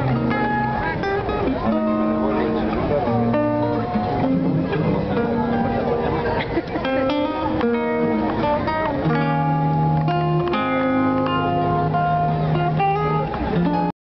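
Live Argentine folk music: a zamba played on guitar, picked and strummed, amplified through the stage loudspeakers.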